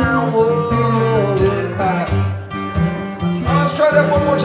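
Two acoustic guitars played together in an acoustic blues number, with a man singing a drawn-out, gliding vocal line over them in the first half and again near the end.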